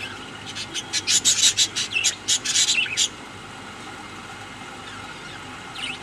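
Caged budgerigars giving a burst of harsh, raspy chatter with a couple of short chirps, lasting about two and a half seconds and then stopping.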